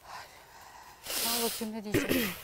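A person's breathy voice: a faint breath at the start, then about a second in a short utterance heavily overlaid with hiss. A single sharp click comes near the end.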